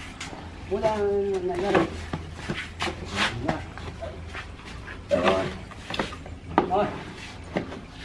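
Several people's voices in short Vietnamese calls and remarks, with a few light knocks between them and a low steady hum underneath.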